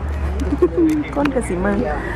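A person's voice making a few short, low, wordless murmuring sounds over a steady low hum.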